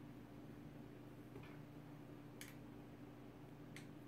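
Near silence over a steady low hum, broken by three faint small clicks about a second apart: the set screw and Allen wrench ticking against the polymer rifle stock as the screw is put back into the pivoting stock.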